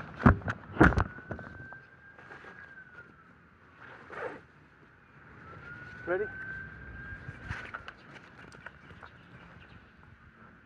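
Two loud knocks in the first second as a phone camera is handled and set down low on the grass, followed by faint outdoor background with a thin, high, steady whine that comes and goes.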